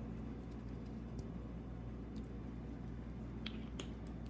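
A few faint, short clicks and taps as a glue stick is handled and capped, over a steady low hum.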